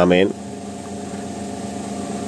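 A man's voice ending a phrase, then a steady background hum during a pause.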